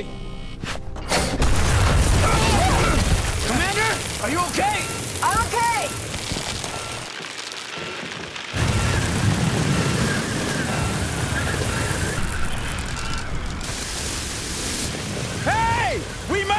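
Film sound effects of a violent storm: a dense wall of wind noise with deep booming rumble. It drops away briefly about seven seconds in, then surges back. Music and a few shouted words run underneath.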